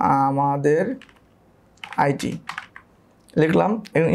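A few keystrokes on a computer keyboard as a word is typed, with a man's voice in short drawn-out sounds between them.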